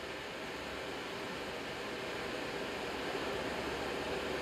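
Steady background hiss with no rocket engine running yet, growing slowly a little louder.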